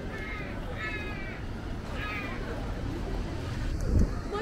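Three short, high, wavering cries in the first half, over a steady street background, with a sharp knock at the very end.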